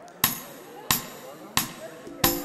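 Three sharp percussive hits at an even beat, about two thirds of a second apart, counting in a folk tune on stage.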